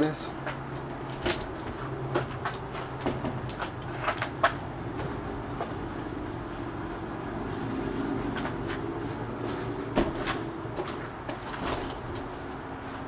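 Scattered clicks and knocks of objects being handled, over a low steady hum.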